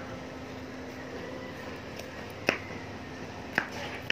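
Two short, sharp knocks about a second apart, the first about two and a half seconds in, over a faint steady hum.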